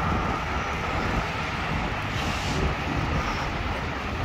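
Steady low rumble of road and traffic noise while travelling along a city street.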